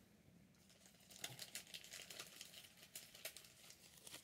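Faint rustling and crinkling of a plastic card sleeve and a trading card being handled, in small scattered ticks starting about a second in.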